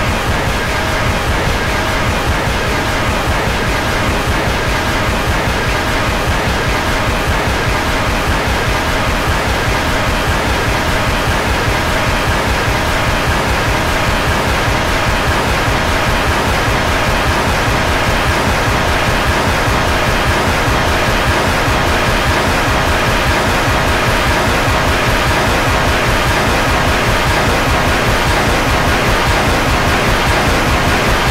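Heavily distorted cartoon soundtrack: a loud, steady wash of noise with faint held tones buried in it, unchanging throughout.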